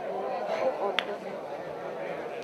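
Spectators around a wrestling ring talking over one another as a steady crowd murmur of voices, with one short sharp click about halfway through.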